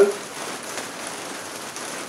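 Steady rain falling on a conservatory's glass roof, an even hiss heard from inside.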